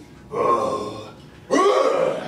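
A young man's voice letting out two loud, drawn-out grunts as he lifts a barbell: one about a third of a second in, a second at about a second and a half.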